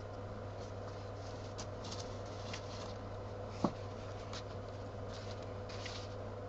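Quiet room tone with a steady low hum, a few faint small ticks and rustles, and a brief spoken word about three and a half seconds in.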